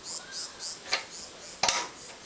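A sharp plastic click about one and a half seconds in as an RJ12 modular plug on a cab bus cable is pushed into the power panel's socket, with a fainter click a little before it.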